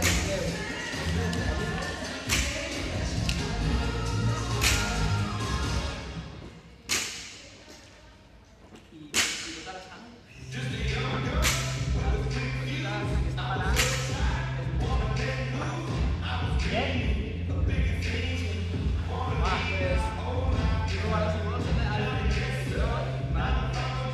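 Background music with a steady bass line, and a sharp thump about every two seconds: a loaded barbell with bumper plates dropped on the gym floor after each snatch. The music thins out for a few seconds near the middle, leaving two thumps standing out.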